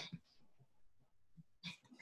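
Near silence in a pause between speech, with a few faint, brief sounds.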